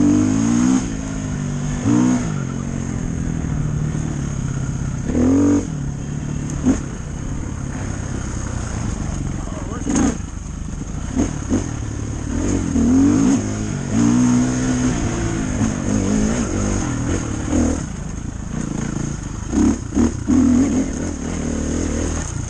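Dirt bike engine under load on a trail ride, revving up and dropping back again and again as the throttle is worked. There are brief louder surges in pitch and level every few seconds.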